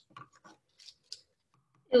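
A few faint clicks of green plastic measuring spoons knocking together on their ring as they are lifted out of a plastic tub of water and handled.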